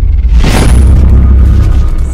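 Intro sound effect over music: a loud, deep, sustained booming rumble with a whoosh about half a second in.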